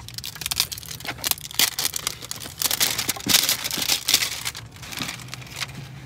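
Plastic packaging crinkling and rustling in the hands as a toy dinosaur egg is unwrapped: an irregular run of small crackles.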